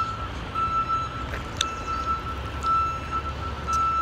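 An electronic warning beeper sounding in short repeated beeps at one steady high pitch, over a continuous low rumble.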